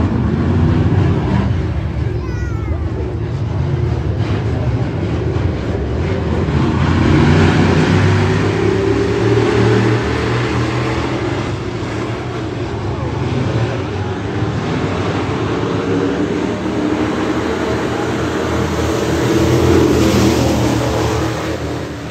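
A pack of Thunder Bomber dirt-track stock cars racing on a dirt oval, engines running hard under throttle. The sound swells twice as the pack comes close, about a third of the way in and again near the end.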